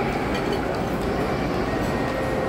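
Steady room noise: a low rumble and hiss with no distinct clinks or knocks.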